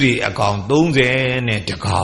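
An elderly Buddhist monk's voice speaking in a slow, drawn-out, chant-like intonation, as in reciting a Pali passage during a sermon.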